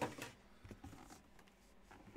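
Mostly quiet room tone with a few faint clicks and taps as a cardboard box is handled.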